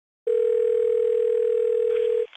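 Telephone dial tone: a single steady tone that starts about a quarter second in and holds one pitch.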